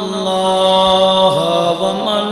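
A man chanting through a microphone in a long, drawn-out melodic voice, an Islamic devotional recitation. He holds each note, with a slow dip and turn in pitch past the middle.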